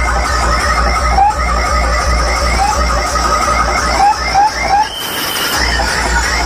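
A large outdoor DJ sound system plays a heavy-bass electronic track: a pulsing deep bass under rapid, short, rising squealing synth chirps. Near the end the bass cuts out for about half a second, leaving a steady high tone, then the beat comes back.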